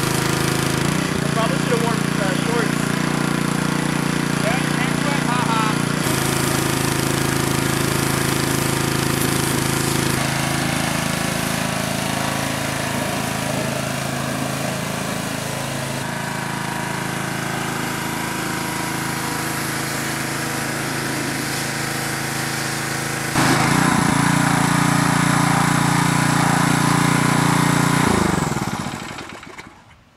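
Small gas engine of a pressure washer running steadily while its wand sprays water onto a wheel to blast off old plastidip and paint. The engine note falls and dies away about two seconds before the end as the machine is shut off.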